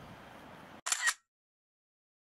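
Faint outdoor background that cuts out abruptly just under a second in, followed by a camera shutter click, a quick double click lasting about a third of a second.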